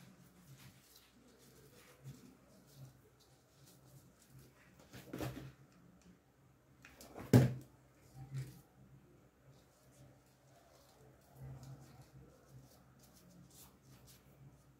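Quiet handling noise of hands working a ribbon bow and hair clip on a table, broken by a few soft knocks, the loudest about seven seconds in.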